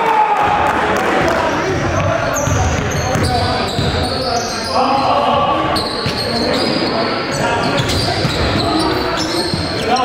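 Live basketball game sound echoing in a gymnasium: the ball bouncing on the hardwood court, players calling out, and short high squeaks scattered through.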